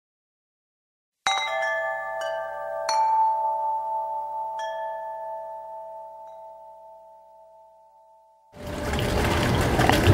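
A short intro jingle of four bell-like struck notes, chime or glockenspiel in character, each ringing on and the whole dying away over several seconds. After a brief silence, a steady background hiss comes in near the end.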